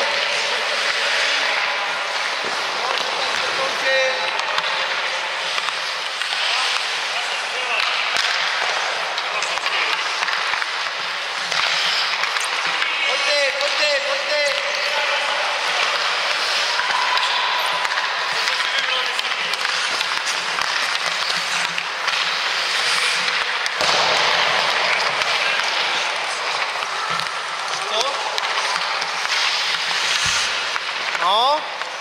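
Indoor ice rink sounds: skates scraping and hissing on the ice, with sharp clacks of hockey sticks and pucks. Voices call out in the background.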